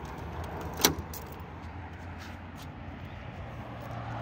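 A single short, sharp click at the car's freshly shut boot lid and lock, about a second in, over a steady low background hum.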